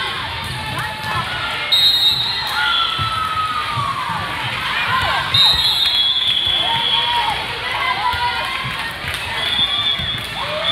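Volleyball gym during a rally: players and spectators shouting and cheering over ball hits and thuds on the court. A short whistle blast comes about two seconds in and a longer one a little past five seconds.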